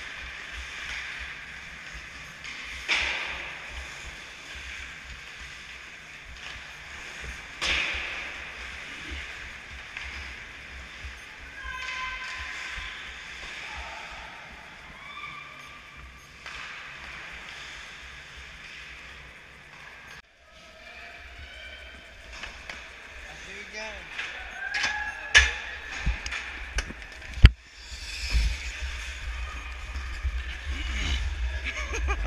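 Ice hockey play heard from a player's body-mounted camera: a steady scraping hiss of skating, players shouting, and sharp clacks of sticks and puck, with a burst of loud cracks near the end.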